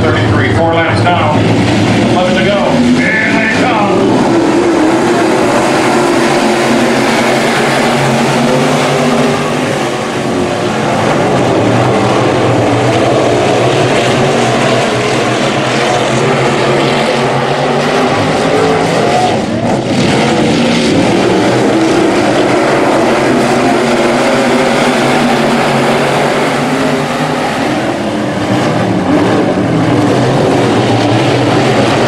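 A field of Sport Modified dirt-track race cars running together, their V8 engines a loud, steady, continuous din as the pack circles the oval.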